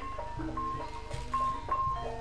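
Javanese gamelan playing: struck metallophone notes ringing out one after another in a steady melody over lower strokes.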